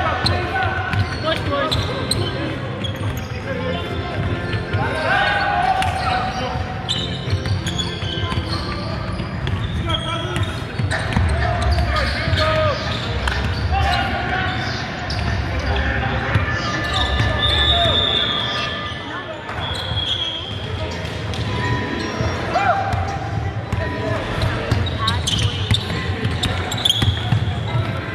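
Basketball being played on a wooden court in a large echoing hall: the ball bouncing and players' feet on the floor, with indistinct shouts from players and onlookers throughout. Several brief high-pitched squeaks stand out, the clearest a little past the middle.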